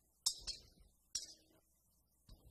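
Brass thurible swung on its chains while the altar is incensed, the censer and chains clinking sharply with each swing: a double clink early on and another about a second later.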